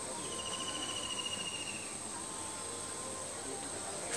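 Insects chirping: a steady high-pitched drone throughout, with a rapid pulsed trill lasting about two seconds near the start.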